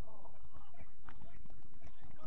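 Distant shouting of footballers calling to each other across the pitch, over a steady low rumble of wind on the microphone.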